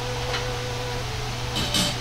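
A steady low background hum, with a faint steady tone during the first second and a short hiss near the end.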